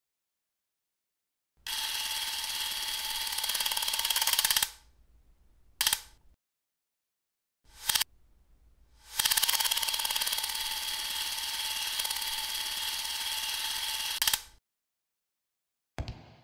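Electric hair clippers buzzing in two long runs of several seconds each, with two brief bursts of buzzing between them, as if switched on and off.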